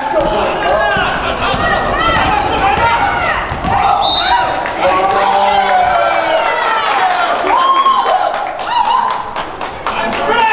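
Basketball game in a reverberant gym: a ball bouncing on the hardwood floor, with players' voices calling out.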